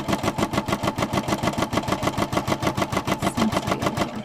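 Brother SE425 embroidery machine stitching at speed, a rapid, even clatter of needle strokes at about ten a second. It is sewing the placement line for an applique letter.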